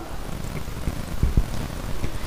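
Steady rushing background noise with no speech, and a brief low thump a little past a second in.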